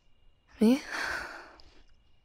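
A woman's voice says a short "I" that runs into a breathy sigh lasting about a second.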